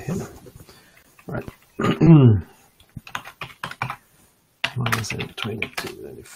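Typing on a computer keyboard: clusters of quick keystrokes in the second half. About two seconds in, a man's voice makes a short falling hum, the loudest sound here.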